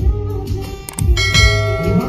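A woman singing live into a microphone over a backing track with a steady beat, holding one long note through the second half.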